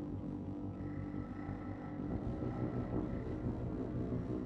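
Dark ambient noise drone: a steady low rumble with sustained tones, and a thin high tone that comes in about a second in.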